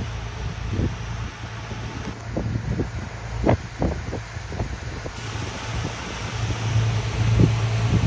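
Steady low drone of a boat's engine under way, with wind buffeting the microphone in short gusts.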